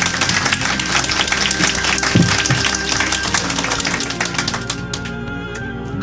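Audience clapping and applauding over background music, the applause thinning out near the end.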